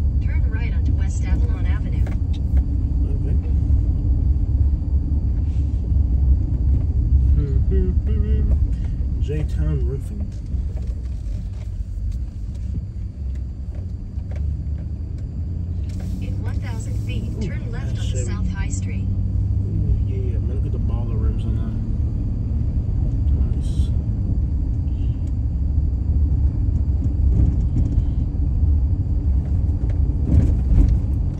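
Steady low rumble of engine and tyre noise heard from inside a truck's cabin while driving slowly down a street. It eases off a little about midway and builds again. Faint voices are heard now and then.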